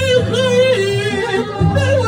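Loud Kurdish wedding dance music: a singer with heavy vibrato and ornamented, wavering melodic runs over amplified accompaniment with a sustained bass.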